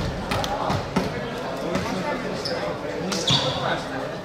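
Volleyball rally in a sports hall: a few sharp, echoing smacks of the ball being hit, with players shouting and voices around the court.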